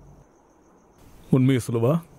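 Crickets chirping faintly as a steady high pulsing, then a voice breaks in about a second and a half in.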